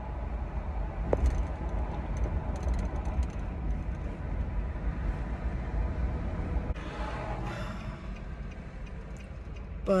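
Steady low rumble of a car heard from inside the cabin: engine and road noise while driving, with a faint voice briefly about seven seconds in.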